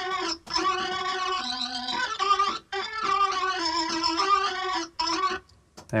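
Studio playback of an electric guitar through fuzz and a phaser, its tone sweeping as the phaser moves, layered with organ. Sustained chords are broken by a few short gaps.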